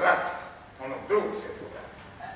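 Two short, loud bark-like calls about a second apart.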